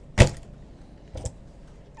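A motorhome's plastic exterior hatch door shut with a sharp clunk, followed about a second later by a softer knock.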